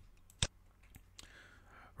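A computer mouse click about half a second in, followed by a fainter click a little after a second, over quiet room tone.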